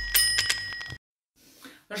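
Bell-like notification chime sound effect of a subscribe-reminder animation. It is a bright ring of several high tones with a few clicks, stopping abruptly about a second in.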